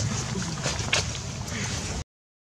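A low, steady rumble of wind and handling noise on the camera's microphone, with a few sharp clicks, the loudest about a second in.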